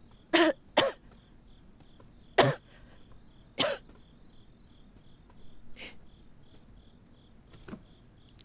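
A person coughing: two quick coughs, then two single coughs a second or so apart, and a softer one later. Faint cricket chirps repeat steadily in the background.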